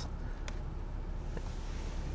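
Nissan 370Z's 3.7-litre V6 idling in neutral, a low steady hum heard from inside the cabin, with one faint click about half a second in.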